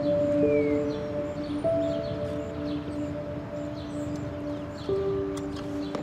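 Soundtrack music of slow, sustained notes, with a new held note coming in every second or two.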